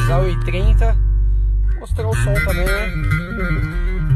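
Music played loudly on a car's aftermarket audio system inside the cabin: a song with guitar, a voice and strong deep bass, with one long bass note held near the middle. The system has a Winca Android head unit, a Hertz amplifier, Focal Auditor mid-bass speakers and a subwoofer in a side box.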